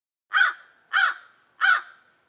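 Crow cawing three times, evenly spaced about two-thirds of a second apart, starting a moment in. It is a crow-caw sound effect.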